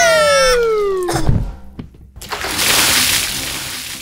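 Cartoon sound effects of a fall into water: a long descending whistle that ends in a low thud about a second in, then a big water splash that fades away.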